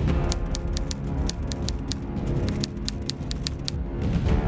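Typewriter key-clicking sound effect, a rapid run of about five or six sharp clicks a second that stops shortly before the end, played over steady, sombre background music.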